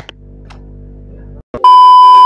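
Over a low steady hum, a click, then a brief drop-out and a loud, steady TV test-tone beep, a single pitch around 1 kHz, starting about one and a half seconds in, used as a colour-bar transition effect.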